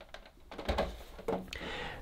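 Plastic top cap of a Dyson Cool Tower fan being lifted off and handled: small, light plastic clicks and rattles, with a soft knock about two-thirds of a second in.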